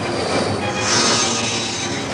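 Sci-fi sound effect from the animated series' soundtrack: a loud screeching hiss that swells about a second in.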